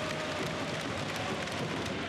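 Steady crowd noise from spectators in an indoor basketball arena, an even wash of sound with no single event standing out.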